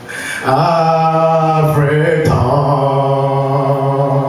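A solo male voice singing a slow gospel song into a microphone in long held notes. After a short breath at the start, he holds one note, slides in pitch about two seconds in, and settles into another long held note.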